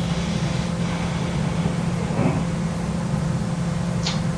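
Steady low hum with an even hiss: the background noise of a small-room interview recording.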